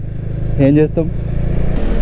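Motorcycle engine running steadily at cruising speed, a constant low hum heard from the rider's position; its note changes slightly near the end.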